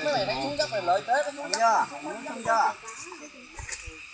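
Several people's voices talking over one another, with no clear words standing out.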